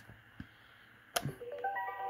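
Electronic robot toy being switched on: near silence, a sharp click about a second in, then the toy's electronic tune of steady stepped notes starts up.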